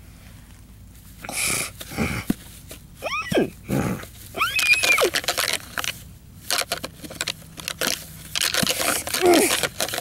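A person's voice making horse-like squeals and whinnies, two sharp calls falling in pitch about three and four and a half seconds in and wavering calls near the end, with rustling of dry grass as plastic model horses are pushed together.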